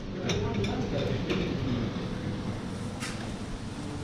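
Indistinct chatter of people in a buffet dining room, with a few sharp clicks, the clearest about three seconds in.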